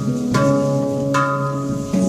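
Handpan played by hand: struck steel notes ringing on and overlapping one another, a new note sounding a little less than once a second.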